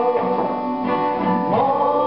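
A woman singing an old Serbian song with a plucked string instrument accompanying her.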